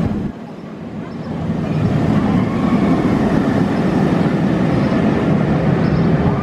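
A Bolliger & Mabillard inverted roller coaster train running along the steel track overhead, a loud rumble that builds over the first couple of seconds and then holds steady.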